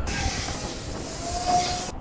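Petrol gushing from a fuel pump nozzle into a plastic bottle: a steady hiss of flowing fuel, with a faint thin tone in the second half.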